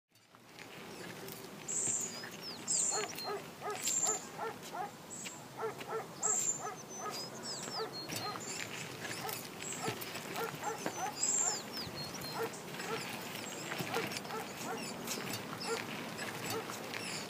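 A dog barking repeatedly, with high chirping calls above it, over quiet outdoor background noise.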